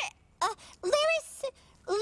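A puppet character's high, cartoonish voice making wordless sounds that slide up and down in pitch, in a few short phrases with brief pauses between.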